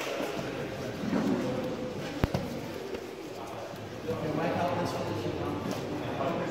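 Indistinct chatter of many voices in a large sports hall, with a single sharp knock a little over two seconds in.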